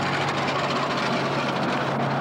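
Tank engine running, a steady noisy drone over a low hum.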